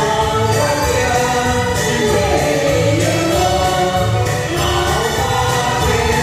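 A vocal duet sung into microphones over amplified backing music with a steady bass beat; the melody line wavers and glides like a sung voice.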